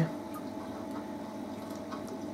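Reef aquarium running: steady sound of circulating water and pump, with a faint steady hum.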